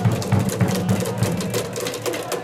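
Cheering section in the stands clapping in a fast, even rhythm, about six claps a second, over a low rolling rumble that stops about a second and a half in.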